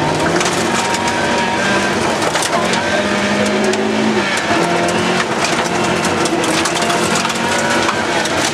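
Rally car engine at full effort, heard from inside the cabin, its note rising and dropping through gear changes, with loose gravel spraying and rattling against the underbody.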